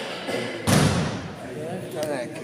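A bocce ball impact: one heavy thud about two-thirds of a second in, the loudest sound here, with men's voices calling out around it.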